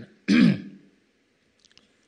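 A man clears his throat once, close to a handheld microphone: a short, loud rasp about a third of a second in that quickly fades, followed by a few faint ticks near the end.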